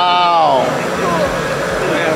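Hissing, rumbling launch effect of a Lego miniature space shuttle display as smoke vents from the pad at lift-off. A person's drawn-out 'ooh' rises and falls over it in the first half-second.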